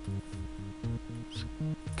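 Quiet background music under a pause in the narration: steady held tones over a bass line of short notes that step up and down at an even pace.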